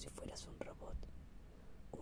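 A voice whispering a Spanish reading close to the microphone, with a short pause in the second half.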